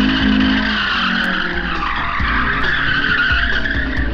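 Car tyres squealing in one long wavering screech as the car skids and spins on the paving.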